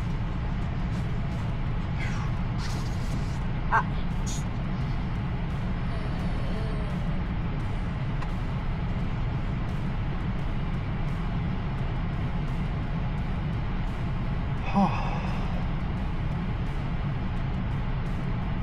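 Steady low rumble of road and tyre noise heard inside the cabin of an electric SUV moving slowly in traffic, with a short sharp sound about 4 s in and another brief sound about 15 s in.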